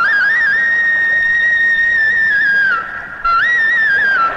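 Film-song instrumental interlude: a flute plays one long high held note, breaks off briefly near the three-second mark, then starts a new phrase.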